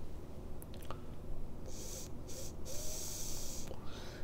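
A man taking a draw on an e-cigarette and breathing out the vapour. A few faint clicks come about half a second in. In the second half there is an airy, breathy hiss, broken twice.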